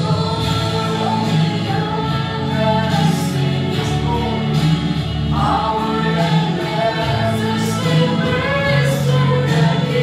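A woman singing a gospel worship song into a microphone over a PA, with an electronic keyboard holding low sustained notes underneath.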